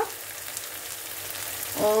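Masala gravy sizzling in a frying pan on the stove: a steady, even hiss. A woman's voice starts just before the end.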